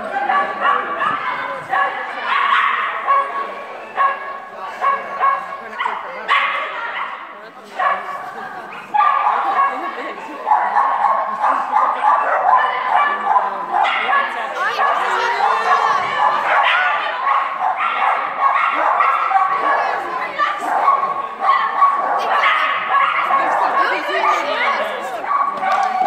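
A dog barking and yipping over and over, almost without pause, with a short lull about eight seconds in.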